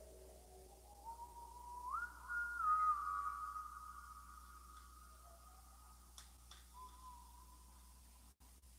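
A soft, pure whistle-like tone climbing in small steps for about two seconds, then held high and slowly fading, with a short lower return near the end. A couple of faint clicks come near the end.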